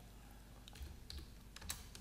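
A few faint keystrokes on a computer keyboard, spaced out across the second half, as a coordinate is typed into AutoCAD's command line.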